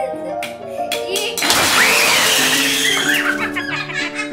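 Background music plays throughout. Within the first second or so, a few sharp clicks come as the plastic ice blocks of a Don't Break the Ice game give way. A loud, noisy squeal with a wavering high pitch follows and lasts about two seconds.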